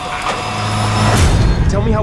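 Trailer sound design: a low drone that swells in loudness and ends in a deep boom about a second in.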